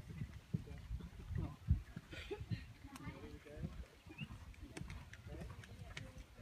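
Hoofbeats of a horse cantering on a sand arena, a run of dull low thuds, with faint voices in the background.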